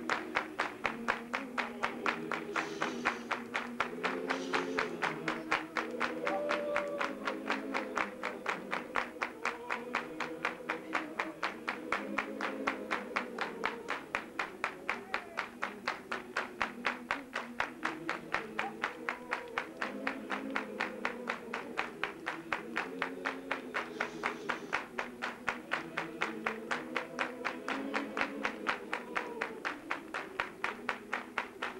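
A congregation singing a hymn together in long, rising and falling phrases, over a quick, steady beat of hand claps.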